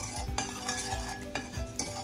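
Metal spoon scraping and stirring sugar across the bottom of a stainless-steel frying pan, in several separate strokes.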